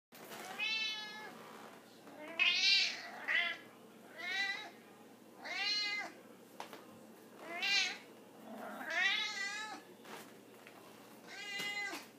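A 16-year-old domestic cat meowing about eight times in a row, short calls a second or so apart with one longer call about nine seconds in, begging for the can of tuna held in front of it.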